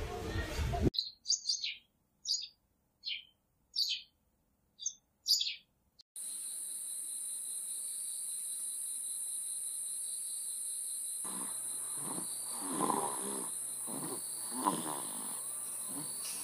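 A run of short, high bird chirps with silence between them, then a steady high-pitched insect drone of crickets or similar night insects. From about eleven seconds in, a child snoring in slow, rhythmic breaths is heard over the drone.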